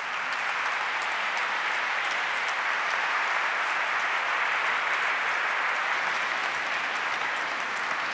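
Audience applauding: a steady, even round of clapping from a large seated crowd.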